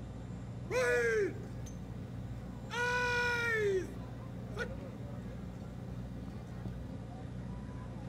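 Two long, drawn-out shouted parade-ground words of command, each held about a second with the pitch rising and then falling, the second one longer, and a short third call a little later, over a steady low hum.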